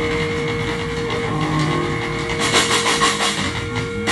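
Live heavy metal band closing a song: a distorted electric guitar chord held and ringing, with a quick run of drum and cymbal hits about two and a half seconds in.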